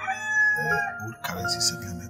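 A rooster crowing, one long call that ends just under a second in, over background music with steady held notes.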